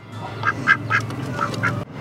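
Muscovy ducks giving a quick run of short, soft calls, about six in two seconds.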